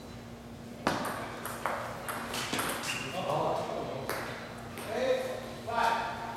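Table tennis ball clicking off the paddles and table in a short rally, the hits starting about a second in and coming roughly every second. Voices call out over the second half, loudest near the end.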